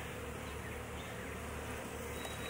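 Honeybees humming steadily over the open frames of a hive, from a colony that has no queen.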